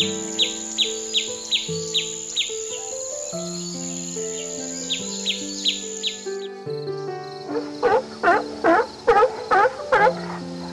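Background music of slow held notes runs under a steady series of short, high, falling chirps, about two or three a second, from swallow chicks in a mud nest. The chirps stop about six and a half seconds in. A second later a louder series of deeper repeated calls begins, about three a second.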